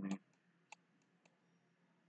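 A few faint, short computer-mouse clicks, three spread over about half a second, just after a man's voice trails off at the start.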